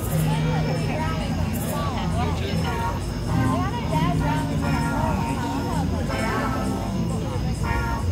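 A live band playing, with held low bass notes that change every second or so, and voices over the music.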